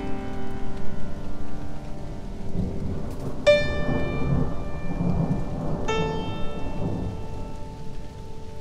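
Rain with low rumbling thunder, over which two single notes on a keyboard instrument are struck, about three and a half and six seconds in, each ringing on and slowly fading.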